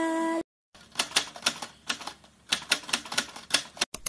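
Keyboard typing sound effect: a run of irregular, sharp key clicks lasting about three seconds, followed by one separate click at the very end.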